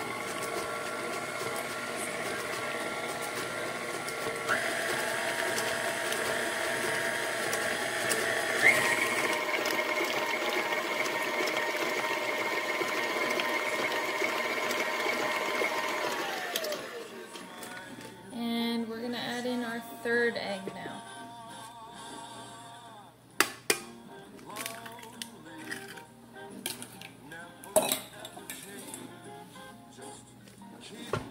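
KitchenAid Artisan stand mixer motor running with its flat beater working egg into creamed butter and sugar. The whine steps up in pitch twice as the speed is raised, then winds down in a falling glide and stops about seventeen seconds in. A few sharp clinks and knocks follow.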